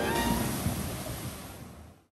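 Log flume boat splashing down into the pool at the foot of the drop: a rush of water and spray that fades out over about two seconds.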